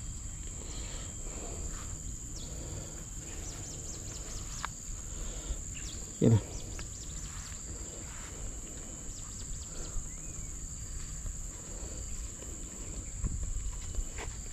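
Steady high-pitched insect drone in the background, with faint scattered clicks and rustling.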